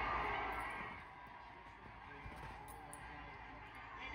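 Sound of a football broadcast coming from a television, faint and muffled, falling quieter about a second in.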